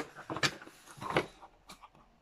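A tripod and its packaging being handled and set out: a few short clicks and rustles, the loudest about half a second in and just after a second.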